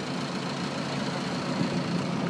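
The generator engine that powers a squid-fishing boat's lamps, running at a steady idle-like drone.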